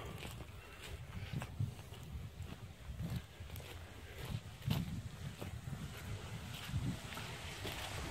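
Footsteps on leaf-strewn soil, faint soft steps about once a second.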